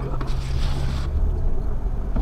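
Off-road vehicle's engine and drivetrain running steadily at crawling speed, a low drone heard inside the cabin, with a brief hiss about half a second in.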